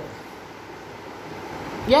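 A pause in speech filled only by a steady, faint background hiss of room or microphone noise, broken near the end by a spoken "yeah".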